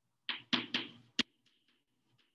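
Chalk writing on a blackboard: three short scratchy strokes and a sharp tap in the first half, then a few faint light ticks as the writing goes on.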